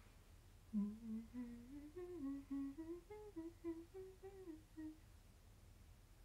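A woman humming a short tune to herself: about four seconds of stepping notes, starting near the one-second mark.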